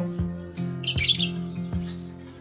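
A lovebird gives one short, shrill squawk about a second in, over acoustic guitar music with plucked notes that plays throughout.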